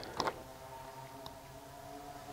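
Light clicks of buttons being pressed on a dog e-collar's remote handset while trying to pair it with the collar, followed by a faint steady hum.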